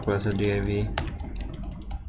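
Computer keyboard typing: a run of quick keystrokes.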